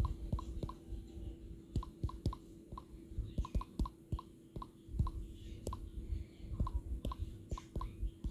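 Typing on a tablet's touchscreen keyboard: short, irregular key-tap clicks, two or three a second, each with a faint tick of tone, over a steady low hum.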